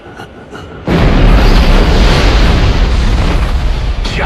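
A few faint ticks, then about a second in a sudden loud cinematic boom that runs on as a heavy rumbling roar mixed with dramatic trailer music.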